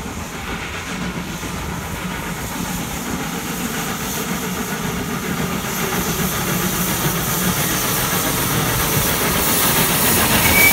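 Metre-gauge steam locomotive working hard up a steep grade with a train of coaches, its exhaust and steam hiss growing steadily louder as it draws near and passes, with the coaches rolling on the rails behind.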